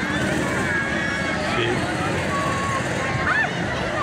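Crowd chatter: many voices, children's among them, calling and talking over one another, above the steady low running of a vehicle.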